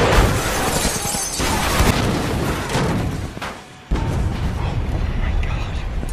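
Film battle sound mix: a dense run of crashing and smashing, with booms and an orchestral score beneath. It drops away briefly a little past halfway, then comes back with a sudden loud hit.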